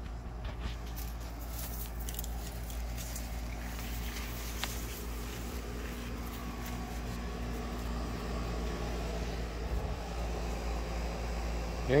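Steady low background hum with no clear single source, with a few faint light clicks in the first three seconds.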